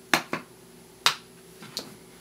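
About five short, sharp clicks and taps of makeup containers being handled on a tabletop. The loudest come just after the start and just after one second.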